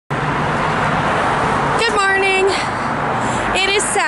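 Steady street traffic noise from passing cars, with a low engine hum in the first half. A woman's voice is heard briefly twice over it.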